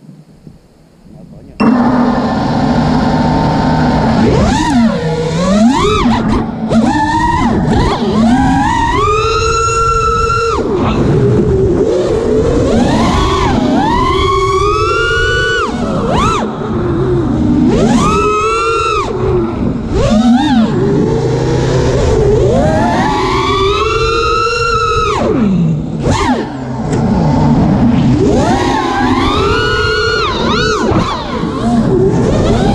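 FPV quadcopter's T-Motor F40 II 2600 KV brushless motors and propellers, heard up close from the onboard camera: they spin up suddenly about a second and a half in, then whine loudly, the pitch sweeping up and down again and again as the throttle changes in flight.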